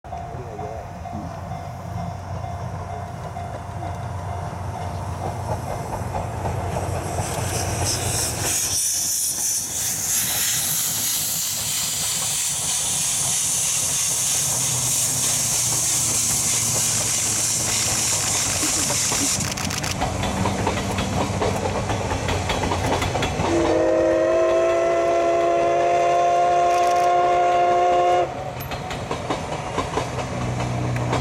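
JNR Class C57 steam locomotive working past with a loud steam hiss that builds and holds for several seconds. It then sounds one long steam-whistle blast of about four seconds, which cuts off sharply, and the train's carriages roll by.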